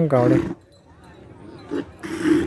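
A voice trailing off in the first half second, then quiet outdoor background with faint scattered sounds.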